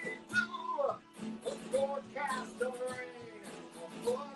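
A man singing while strumming an acoustic guitar, with held, gliding vocal notes over steady chords, heard through a video-call connection.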